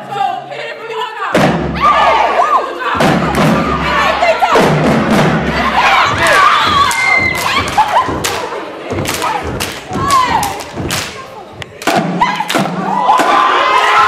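Loud, irregular drum hits and thuds from a marching drumline, with a crowd shouting and cheering over them.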